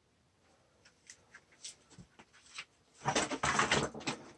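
Handling noise at the rifle and fill hose: faint scattered clicks and taps, then about a second of louder rustling and scraping near the end.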